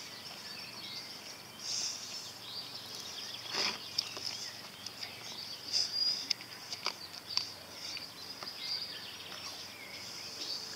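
Outdoor ambience: a steady high-pitched insect trill, with a few bird chirps and a handful of faint clicks.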